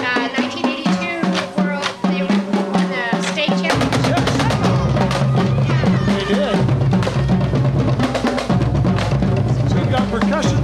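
High school marching band playing as it passes: the drumline's snare, tenor and bass drums beat steadily, and about four seconds in the fuller band comes in with sustained low brass notes under the drums.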